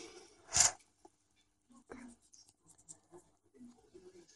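Faint handling of a marker pen and a thin silk-covered copper wire: a short hiss about half a second in, then scattered small clicks and light rubbing.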